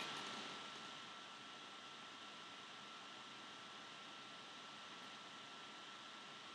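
Faint steady hiss of room tone and recording noise, with a thin steady high tone running through it; no handling or other distinct sounds.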